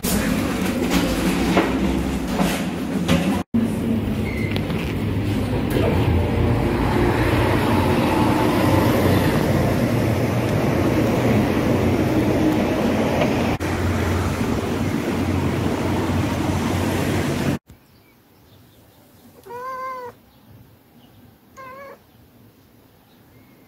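Loud, steady traffic noise for most of the stretch, which cuts off suddenly. In the quiet that follows, a cat meows twice: a longer call about two seconds after the cut and a short one near the end.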